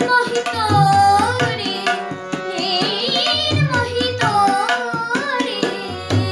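A boy singing a gliding, ornamented melody to his own harmonium, its reeds holding steady notes under the voice, with tabla strokes and low thumps keeping a beat.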